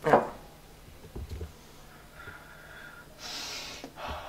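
One short sniff near the end as a person smells a mug of hot cocoa held up to the face. Before it, a quiet stretch with a couple of soft knocks about a second in.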